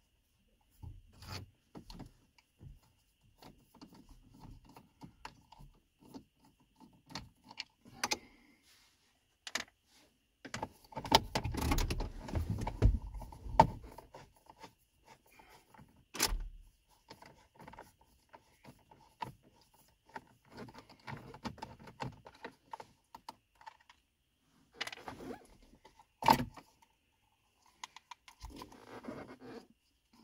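A hand nut driver turning out the small 7 mm bolts that hold a plastic dash storage pocket, with scattered clicks, small rattles and scrapes of the tool, bolts and plastic trim. There is a busier stretch of rattling handling partway through, and a few sharp clicks later on.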